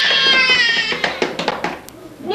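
A toddler's high-pitched squeal of about a second, sliding slightly down in pitch, followed by a few light clicks or knocks.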